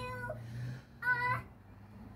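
A toddler's short high-pitched vocal sounds, one at the very start and a louder one about a second in, over a steady low hum.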